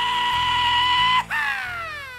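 A cowboy-style "yeee-haw" whoop: a high held cry of about a second and a half, then a cry that slides down in pitch. Background music plays underneath.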